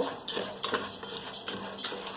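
A wooden spatula stirs dry rice and diced onion in a stainless steel pot, making a run of short scrapes and rustles against the pot as the rice toasts over high heat.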